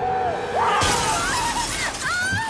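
A car's side window smashed in, the glass shattering suddenly about a second in, with a woman screaming before and through the crash.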